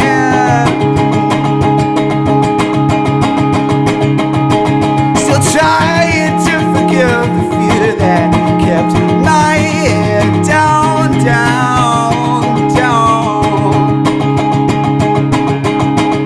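Indie folk music played live: electric guitar through an amp with a wordless sung melody gliding between notes, over steady sustained low notes that shift about ten and a half seconds in.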